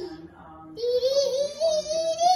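A young child's high voice singing long wordless notes: one falls away at the start, and another wavering note is held from about a second in.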